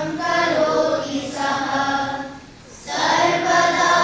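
A group of children chanting a Sanskrit sloka together in unison, in a sung, held melody, pausing briefly for breath about two and a half seconds in before going on.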